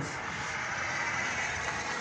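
A steady, even background noise, like a machine running, with no distinct strokes or clicks.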